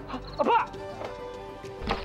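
A short exclaimed word from a voice, then soft film background music holding one long steady note, with a sharp knock near the end.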